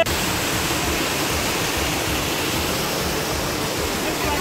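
Steady rushing of a stream's fast-flowing water, loud and even.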